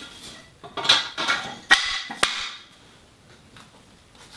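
Black metal crossbar sections of a kayak storage rack clanking against each other and the floor as they are handled and fitted end to end: a run of sharp metallic knocks and scrapes about a second in, then quieter handling.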